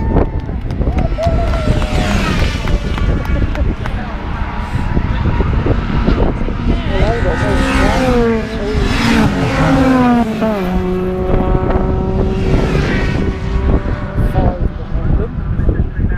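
A string of racing cars passing at speed, engine notes swelling in several waves and dropping in pitch as each car goes by, the loudest passes about eight to ten seconds in.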